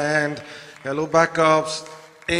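A man's voice over a microphone, with long drawn-out vowels and a rising and falling pitch. It trails off near the end.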